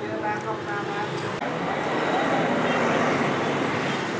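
Street traffic noise: the rush of vehicles going by, swelling louder from about a third of the way in, as a passing vehicle comes close, and easing a little near the end. Faint voices are heard in the first second.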